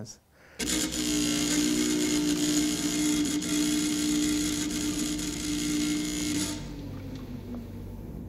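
Electroencephalograph chart recorder running with a steady mechanical whir and a held hum, starting suddenly about half a second in. The high hiss cuts off near the end, leaving a lower hum.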